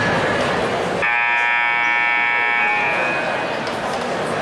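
Gym scoreboard horn sounding one long, buzzy blast that starts suddenly about a second in and fades out after about two seconds, the signal that the timeout is over, with crowd chatter around it.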